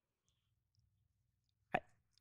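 Near silence with a faint low hum, broken near the end by a single short pop.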